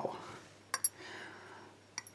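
Two quick, light clicks of steel tweezers and a tiny lock pin being set down in a pin tray, a little under a second in, with another faint click near the end.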